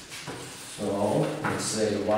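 Chalk tapping and scraping on a blackboard as a man writes, with his voice talking from about a second in.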